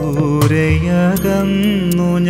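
Malayalam Christian devotional song: a melody with pitched accompaniment and low notes, and a percussive hit about half a second in.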